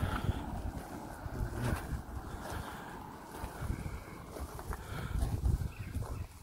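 Wind buffeting a phone microphone outdoors: an uneven low rumble with a few faint clicks.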